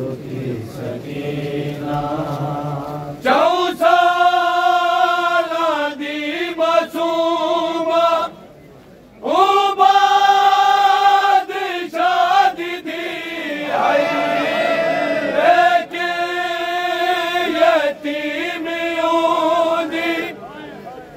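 Group of men chanting a noha, a Shia mourning lament, in unison on long drawn-out held notes. A lower voice carries the first few seconds before the full group comes in, and there is a short break about eight seconds in.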